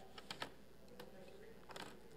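Faint clicks and light taps of papers being handled on a wooden pulpit: a quick run of clicks in the first half-second, one more about a second in, and a short cluster near the end.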